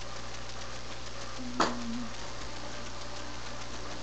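Room tone of an empty room: a steady hiss with a low electrical hum, broken by one sharp click about a second and a half in.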